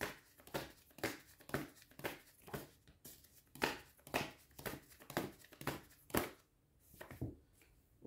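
A deck of tarot cards being shuffled by hand: a run of quick card slaps and riffles, about two to three a second, breaking off briefly near the end before a couple more.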